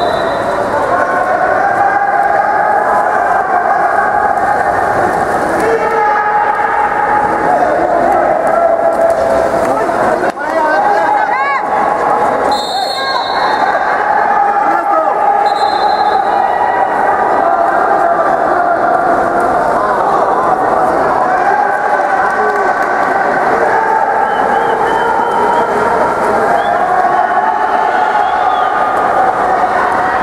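Water polo spectators shouting and cheering without pause, many voices overlapping. Short, high whistle blasts sound about halfway through, likely a referee's whistle.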